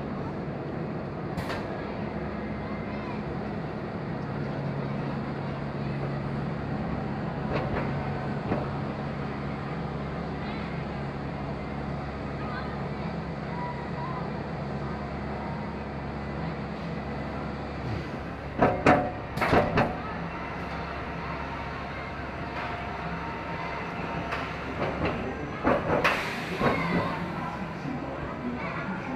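Roller coaster train rolling slowly into its station on the brake run, a steady low rumble and hum of wheels and drive tyres, with a pair of loud clunks about two-thirds of the way in and a run of knocks near the end.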